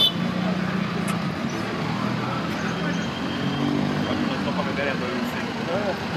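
SUV engine running at low speed as the vehicle pulls up, with people chattering around it. A sharp click about a second in.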